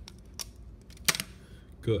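Thin PLA brim being peeled off a small 3D print by hand: a few small, sharp plastic clicks, the loudest about a second in.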